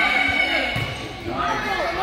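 Volleyball being played in a gym: a thud of the ball being hit about three-quarters of a second in, amid players' and spectators' shouting voices echoing in the hall.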